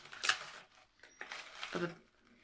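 A woman's hesitant speech, broken by a brief rustle about a quarter second in as a plastic pouch is handled.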